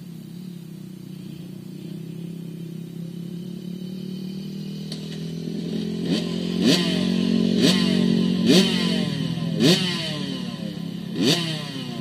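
Small kids' minicross motorcycle engine idling steadily, then from about halfway the throttle is blipped sharply about once a second, each rev rising and dropping back to idle. The bike is running again after it had stalled.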